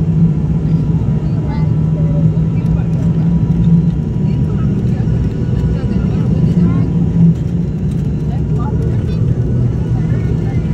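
Steady, even drone of a high-wing turboprop airliner's engines and propellers heard inside the passenger cabin on the approach to landing, a strong low hum with a faint steady tone above it.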